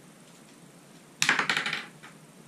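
A quick burst of rapid metallic clicks and clatter from hand tools and metal hardware, a little over a second in and lasting under a second.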